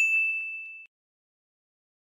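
A single ding of a notification-bell sound effect: one bright, high ring that fades and cuts off abruptly just under a second in.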